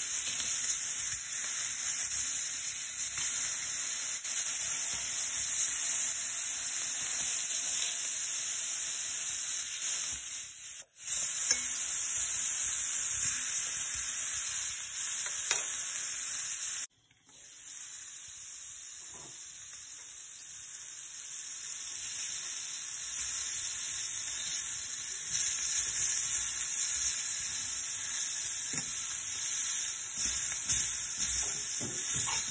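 Pork ribs frying in an oval steel pan, a steady sizzle throughout. The sound cuts out suddenly about 17 seconds in, then returns quieter and builds back up over the next several seconds.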